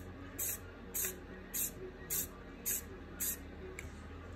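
Short hissing bursts repeat very evenly, about twice a second, over soft background music with held chords.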